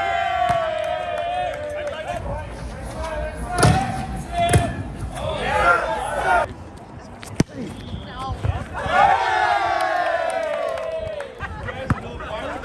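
Volleyball rally: two sharp smacks of hands hitting the ball a few seconds in, followed by players shouting, then a single sharp crack about halfway through and another round of shouts and calls from the players.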